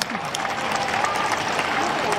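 Crowd of supporters clapping steadily for a player walking past to the team bus, with voices mixed into the applause.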